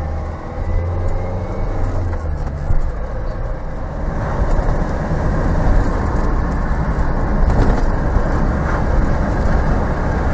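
2007 Vauxhall Vivaro van's 2-litre diesel engine pulling under load, heard from inside the cab. It grows louder about four seconds in as the revs climb, with the lack-of-boost fault now fixed.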